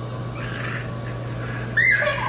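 A kitten gives one short meow near the end, over a steady low hum.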